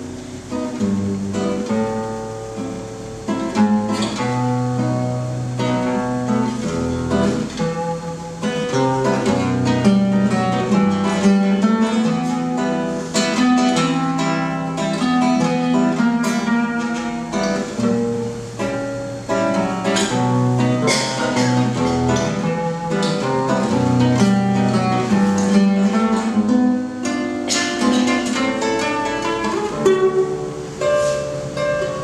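Instrumental music on acoustic guitar, plucked and strummed, with low bass notes moving under the melody.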